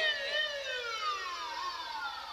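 A man's voice through a PA system holding one long, drawn-out note that slides steadily down in pitch and fades over about three seconds.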